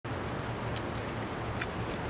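A dog's harness hardware jingling in a few short, light clinks as the Shar Pei puppy trots along, over a steady background noise.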